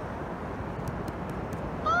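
Steady rushing noise of wind and surf on an open beach, with a high-pitched voice rising into an exclamation at the very end.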